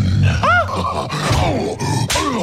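A voice yells "Ah!" about half a second in, a short cry that rises and falls in pitch, followed by further wordless vocal sounds.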